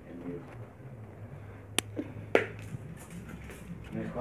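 Quiet handling of small school supplies: two sharp clicks a little under two seconds in and about half a second apart, then light ticks and rustling.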